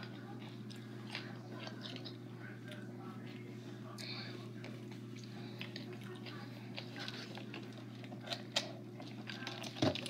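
Close-up chewing of a raw green bell pepper topped with Flamin' Hot Cheetos, with faint scattered crunches and a couple of sharper crunches near the end, over a steady low hum.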